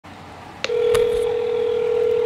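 A telephone line tone: a click, then one steady mid-pitched tone held for about two seconds, with a second faint click shortly after it starts.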